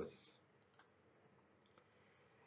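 Near silence: room tone with a couple of faint clicks about a second in.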